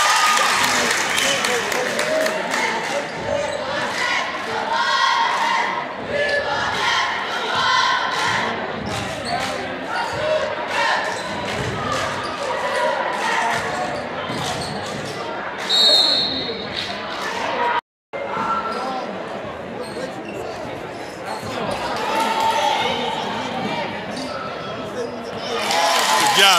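Basketball bouncing on a hardwood gym floor during play, with voices echoing around the gym. A short high-pitched tone sounds about sixteen seconds in, and the sound cuts out for a moment about two seconds later.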